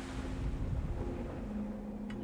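A low, steady rumbling noise like wind, with a faint hum coming in about halfway through: ambient sound design on a film trailer's soundtrack.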